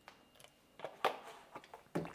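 A few light clicks and knocks of kitchen items being handled on a countertop, the loudest near the end as a milk carton is set down.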